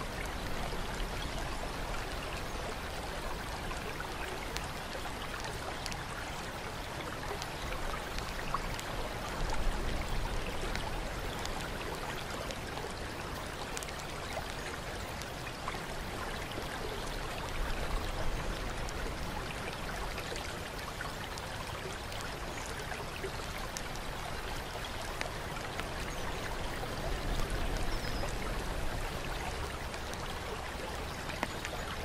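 Steady running water trickling and splashing into a bath pool, with slight swells in level now and then.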